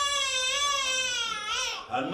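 A man's voice in a high, drawn-out wail: one long wavering note that glides and breaks off near the end, followed at once by another held note.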